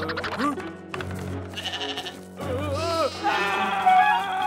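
Cartoon background music under short, wordless character vocalizations whose pitch glides up and down, one with a fast wobble about halfway through.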